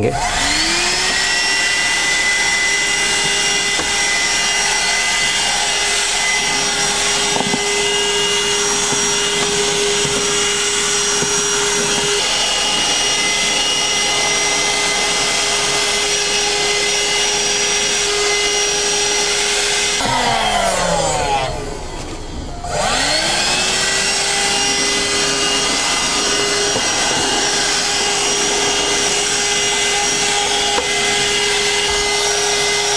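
Agaro Extreme handheld car vacuum cleaner running with a steady motor whine while its bristle brush attachment cleans the dashboard. The motor spins up at the start, winds down and stops about twenty seconds in, then starts again and spins back up a couple of seconds later.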